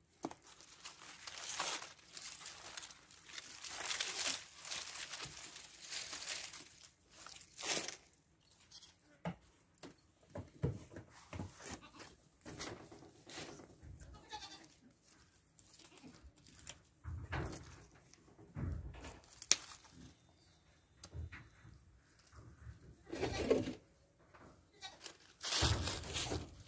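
Dry pea vines and dead leaves rustling and crackling as they are pulled out of trellis rope and clipped near the ground with hand pruners, in irregular bursts with an occasional sharp snip.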